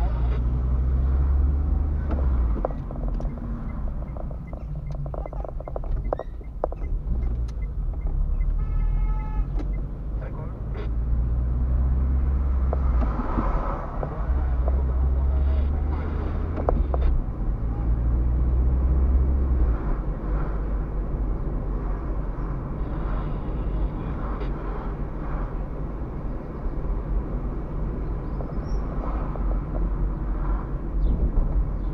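A car driving slowly, heard from inside the cabin: a low engine and road drone that swells and fades several times as the car speeds up and slows down. A brief pitched tone sounds about nine seconds in.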